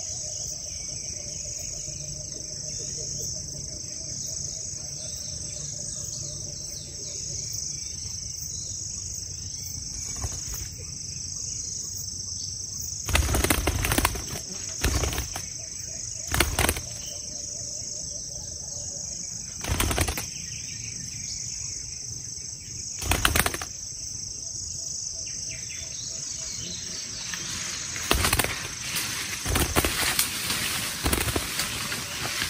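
A wild dove caught in a snare at a decoy cage trap beating its wings hard in about six short, loud bouts from about halfway through, over a steady high drone of insects.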